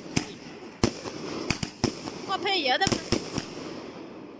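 A firework cake (a box of fireworks on the ground) firing its shells one after another: about nine sharp bangs at uneven intervals over a steady hiss of spraying sparks.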